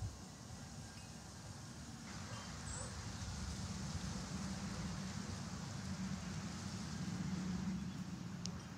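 Outdoor background noise: a low, steady rumble that swells slowly from about two seconds in.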